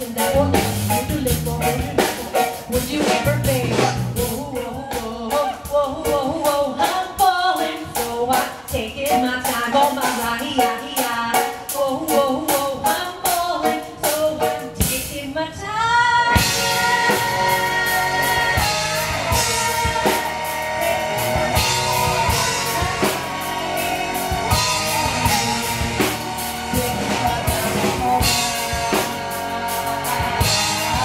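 Live rock band playing: a woman singing over drum kit, guitars and keyboards. About halfway there is a brief drum break, after which held notes ring steadily over the beat.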